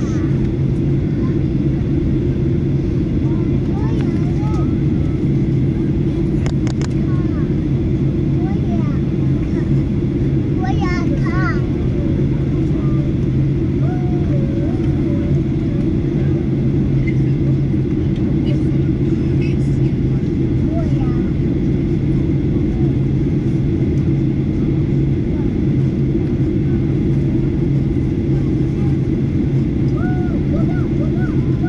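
Steady low drone of a jet airliner's cabin in flight, engine and airflow noise with an unchanging hum underneath.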